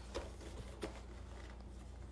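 A few faint taps and handling sounds as a picture frame with a craft canvas set into it is handled, over a low steady hum.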